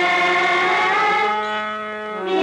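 Group of women singing, holding long drawn-out notes that glide slightly and step down in pitch near the end, in a chant-like devotional style.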